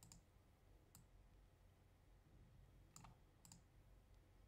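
A few faint clicks of a computer mouse over near silence: one at the start, one about a second in, and two close together about three seconds in.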